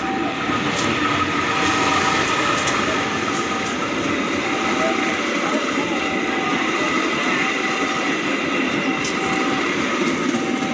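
CC 203 diesel-electric locomotive passing close by, then its string of passenger coaches and cargo vans rolling past with a steady rumble and wheel clatter, loudest about two seconds in. A short warning tone from the level-crossing alarm repeats about every second and a quarter.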